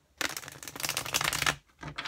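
Tarot deck being riffle-shuffled on a table: a rapid flutter of cards for over a second, a brief pause, then more card clicking near the end.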